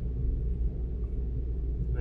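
A car's steady low rumble heard from inside the cabin while driving.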